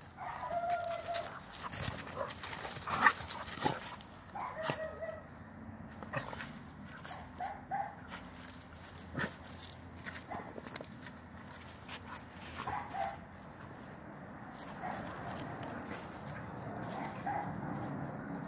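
Two dogs play-fighting, giving short vocal calls now and then, with scuffling and knocks from their bodies and paws on the grass.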